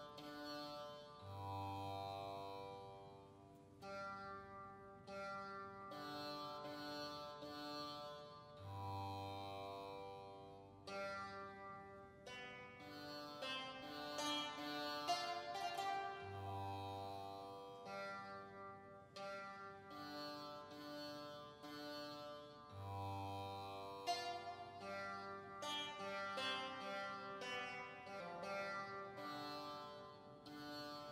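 Slow contemporary choral music: held voices over a sustained drone, with a deep low note sounding about every seven seconds.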